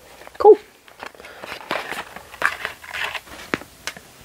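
Cardboard-and-plastic toy packaging of a teether being handled: irregular rustling and scraping with light taps and a sharp click about three and a half seconds in.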